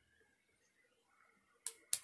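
Near silence, then a sharp click near the end, followed by a few quicker clicks.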